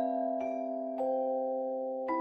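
Soft lullaby music: a slow melody of bell-like struck notes, a new note about every half second, each left ringing under the next.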